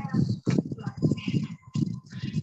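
Acoustic guitar strummed in a quick, percussive rhythm, played back from a video shared over a video call. A voice trails off right at the start.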